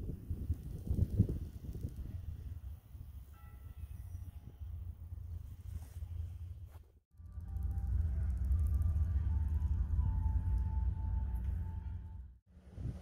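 Wind buffeting the microphone, a low rumble that cuts out briefly about seven seconds in and comes back louder. Faint music with long held notes sits underneath.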